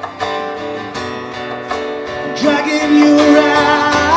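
Live acoustic band playing: strummed acoustic guitar with cajon and upright bass. A little past halfway a held sung note comes in and the music gets louder.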